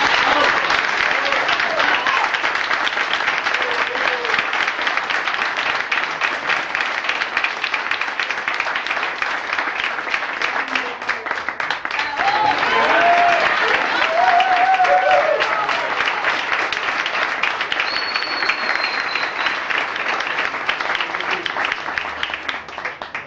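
Group of people applauding steadily, with voices calling out and cheering in the middle, where the clapping is loudest.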